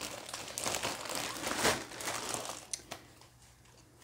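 A plastic bag crinkling and rustling as it is handled and rummaged through. The crinkling comes in bursts with sharp crackles, loudest about halfway through, then dies down to faint handling in the last second.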